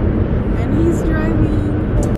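Steady road and engine rumble inside a moving car's cabin, with a faint voice partway through.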